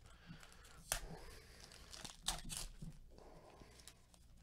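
Faint rustling of a stack of trading cards handled in gloved hands, with sharp flicks about one second in and again around two and a half seconds in.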